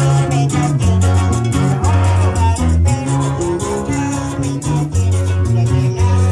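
A live carranga band playing a brisk dance tune: strummed guitars in a steady, even rhythm over a stepping bass line.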